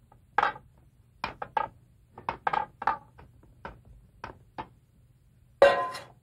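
A whisk knocking and scraping against a stainless steel mixing bowl in irregular strokes as cream is folded into chocolate mousse base. Near the end comes one louder metallic clatter with a brief ring.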